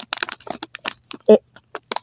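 Thin plastic of a clear catheter drainage bag crinkling as it is handled, an irregular string of short, sharp crackles, with one short spoken word a little past the middle.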